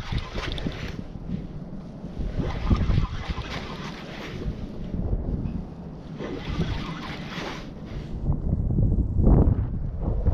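Wind buffeting the microphone in uneven gusts, strongest about nine seconds in.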